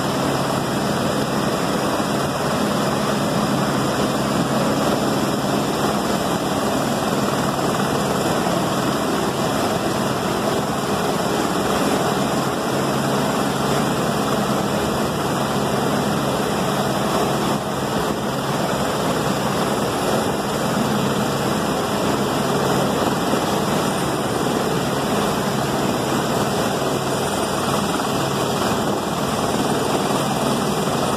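Helicopter hovering, its rotor and engine running steadily, over the continuous rush of a flash flood tearing through a rocky canyon.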